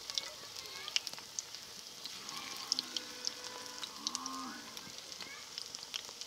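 Bottle-gourd koftas deep-frying in hot oil in an aluminium kadhai: a steady sizzle with scattered sharp pops and crackles.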